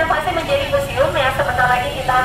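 Speech only: a woman talking continuously into a handheld microphone, her voice amplified.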